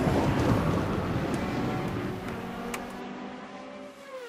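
Intro sound effect: a loud, dense rumble from an explosion-like hit fades steadily away. In the second half a pitched, engine-like drone comes through it and glides down in pitch at the very end.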